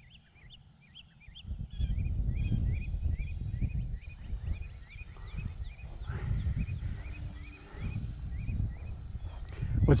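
Wind buffeting the microphone in uneven low gusts, under a small bird chirping over and over, about two short rising chirps a second.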